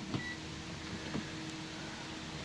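A digital clamp meter gives one short, high beep just after the start as it is switched back on, over a faint steady hum; two faint clicks follow, about a second apart, as it is handled.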